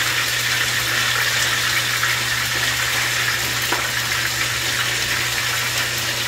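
Steady sizzling hiss of food frying in a skillet on the stove, over a low steady hum.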